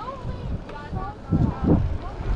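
Wind buffeting the microphone of a camera riding on a moving bicycle, in low gusty rumbles that peak in the second half, with a faint indistinct voice underneath.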